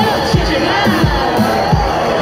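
Dance music with a fast, steady kick-drum beat, about three beats a second, played through a street loudspeaker, with the watching crowd cheering and whooping over it.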